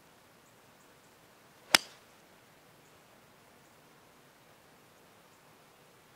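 A six iron striking a golf ball on a tee shot: a single sharp click just under two seconds in.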